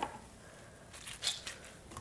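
Faint squishing of hands rubbing through wet hair, a few soft strokes about halfway through.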